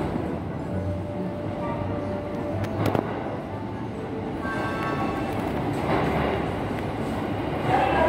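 Electric train pulling into a station platform: a steady low rumble that grows louder near the end as the train draws in, under station-platform background noise.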